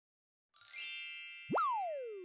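Intro logo sound effects: a bright chime of many high ringing tones starts suddenly about half a second in and rings on, then near the end a quick upward swoop turns into a long falling glide in pitch, a cartoon boing-like effect.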